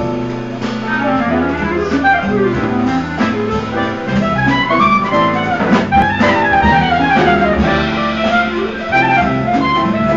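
Live jazz combo playing: a reed instrument carries a quick, winding melodic solo over the rhythm section's steady low notes.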